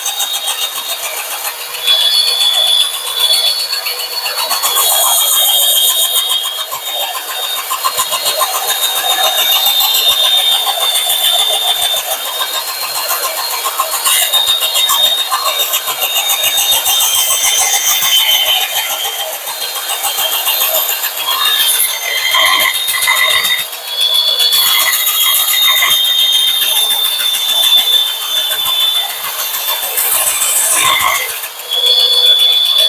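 Drill-driven sanding drum grinding the metal shoe of a DeWalt DCS573 circular saw, taking material off to make the base plate flat and square. A steady high whine with a harsh grinding hiss that swells and eases as the plate is pressed on and lifted, dipping briefly several times.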